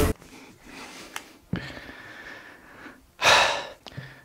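A man breathing out hard in one loud puff of breath about three seconds in, winded from shaking the bowl. A soft knock comes earlier, as the stainless-steel bowl is set down on the wooden board.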